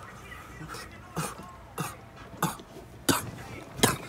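A man coughing in a fit from inhaling blunt smoke: five sharp coughs about two-thirds of a second apart, starting about a second in and growing louder.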